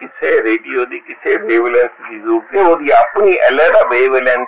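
Speech only: a man talking steadily, with no other sound.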